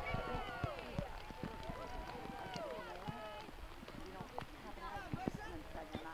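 Spectators' overlapping shouts and calls at a soccer match, loudest in the first second and again around the middle, with a few scattered sharp knocks.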